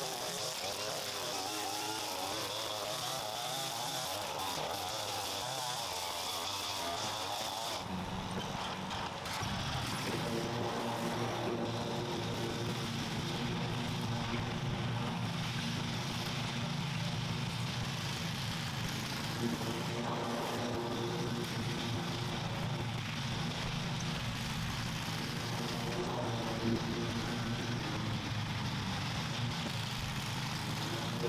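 Gas string trimmer running at high speed with a wavering whine for about the first eight seconds. Then a commercial walk-behind mower's engine runs steadily and lower-pitched for the rest.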